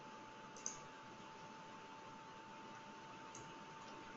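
Near silence: low hiss with a faint steady tone, and a faint computer-mouse click about half a second in, with another faint click near the end.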